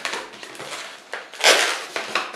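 Long latex modelling balloon being twisted by hand, rubber rubbing and scraping against rubber in a few short bursts, the loudest about a second and a half in.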